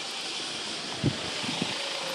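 Steady hiss-like outdoor street background noise, with a faint short knock about a second in.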